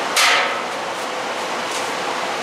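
Steady, even background hiss, with a brief breathy rush just after the start.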